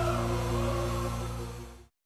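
Short TV-show title jingle: a held music chord that fades out near the end.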